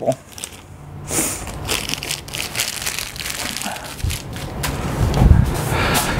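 Thin plastic packaging bag crinkling and rustling as a network cable is handled and unwrapped, with many small crackles. There are a few soft low bumps in the last couple of seconds as things are set down.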